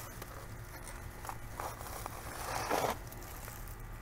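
A squash bug being crushed into woven weed-barrier fabric and mulch: a few faint scrapes, then a longer scrape about two and a half seconds in.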